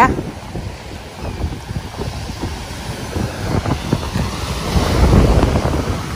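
Sea wind buffeting the microphone over the wash of surf, the wind gusting stronger about five seconds in.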